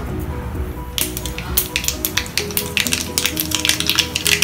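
Mustard seeds popping and spluttering in hot ghee in a small tempering pan: sharp crackles start about a second in and come thick and fast. Background music plays under it.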